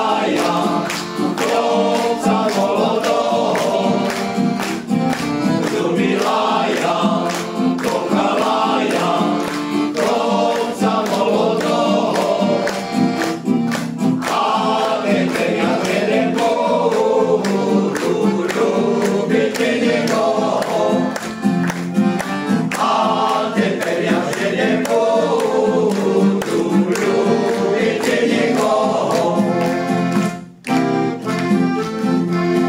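Male choir singing a song in harmony, accompanied by acoustic guitar and piano accordion.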